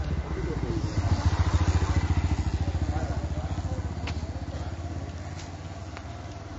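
A motorcycle engine passing close by on the road, its pulsing rumble loudest about a second or two in and then fading away.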